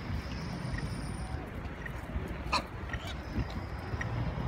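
A herd of wild boar crossing a street, with one brief, sharp, high call from the animals about two and a half seconds in, over a steady low rumble.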